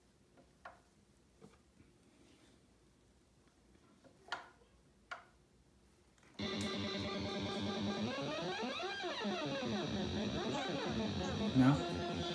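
Moog Grandmother analog synthesizer starting suddenly about halfway through after near quiet with a few faint clicks, then holding a loud, dense sustained tone whose pitches sweep up and down against each other. A toddler gives a short cry near the end.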